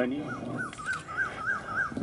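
An animal's high, wavering call, repeated about six times in quick succession, each note rising and falling in pitch.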